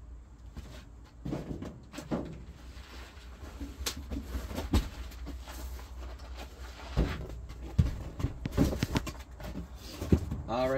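Scattered knocks and scuffs of cardboard boxes being pulled out and shifted about, over a low steady hum.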